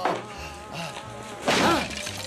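Wooden chair blows in a fight: a sharp whack right at the start, then a louder crash about one and a half seconds in.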